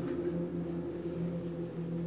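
A steady low hum with a constant pitch and a faint hiss behind it, unchanged throughout.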